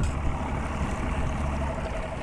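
Boat motor running steadily at trolling speed, with a low rumble and a faint steady hum, and water washing past the hull.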